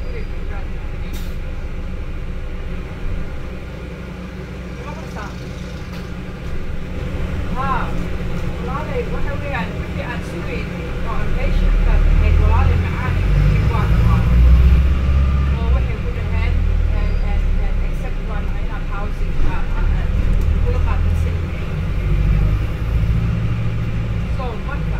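On-board noise of a Volvo B5LH hybrid double-decker bus on the move: a steady low drivetrain and road rumble that grows louder about halfway through. Passengers' voices murmur in the background.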